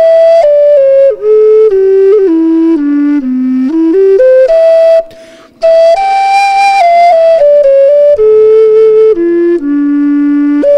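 Solo wooden folk flute covered in unworked bark, playing a short melody with a velvety tone. The notes step down to a low note about three seconds in, climb again after a pause for breath about halfway, and settle on a long low note at the end.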